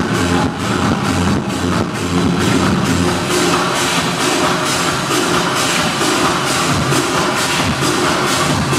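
Techno DJ set played loud over a club sound system, a steady driving beat with no break.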